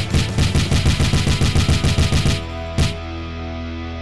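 A rapid string of punch sound effects, about seven hits a second for some two and a half seconds, then one more hit, over background music.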